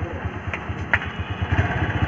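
An engine idling nearby, a steady rapid low throb, with two short sharp clicks about half a second and a second in.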